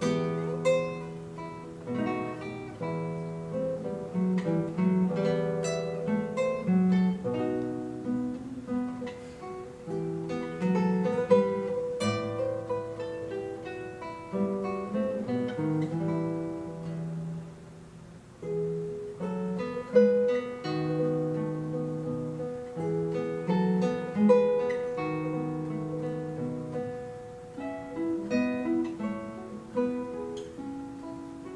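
Solo classical guitar played fingerstyle: a continuous line of plucked nylon-string notes over ringing bass notes, easing off briefly about two-thirds of the way through before picking up again.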